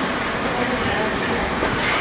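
Steady background noise, an even hiss and low rumble with no break, under a few faint short tones.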